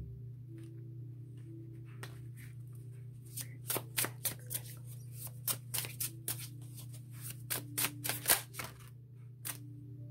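A Baroque Tarot deck being shuffled by hand: a quick run of card snaps and slaps from about three seconds in until near the end, over soft steady background music.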